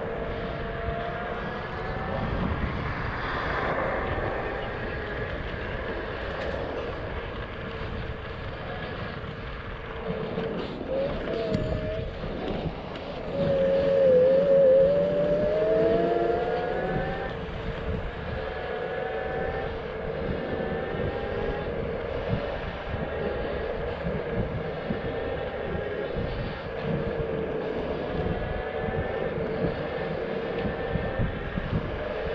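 Zero 11X electric scooter's hub motors whining as it rides, the pitch gliding up and down with speed, over wind and tyre rumble on the chest-mounted microphone. The whine is loudest a little before halfway, where it wavers and then rises as the scooter speeds up.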